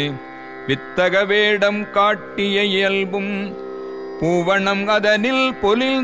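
A voice singing a devotional hymn in Carnatic style, its pitch wavering and ornamented, over a steady drone. The singing breaks off briefly near the start and again past the middle, leaving only the drone.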